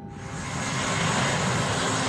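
Jet airliner engines running at high power as the plane moves along the runway: a loud rushing noise with a high whine on top, starting suddenly and swelling over the first second.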